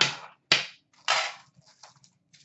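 Sharp snaps and crackles of clear plastic wrap being torn off a metal Upper Deck hockey card tin as it is opened: a loud snap about half a second in, a longer crackle half a second later, then light clicks and rustles.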